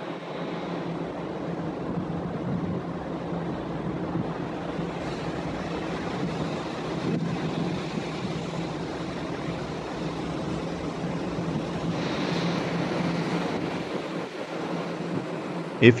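Steady offshore rig machinery noise: a constant low hum under an even rushing hiss, with no sudden events.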